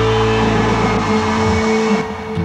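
Loud rock band music: a sustained, distorted electric guitar chord ringing out over a steady drone. The lowest notes drop away about a second in.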